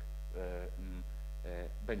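Steady low electrical mains hum running under the recording, with a man's short drawn-out hesitation sounds between words.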